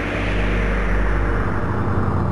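A cinematic whoosh sound effect that swells and fades, peaking about halfway through, over a low steady soundtrack drone.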